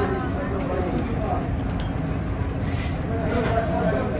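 Indistinct voices of people talking in the background over a steady low hum of kitchen noise.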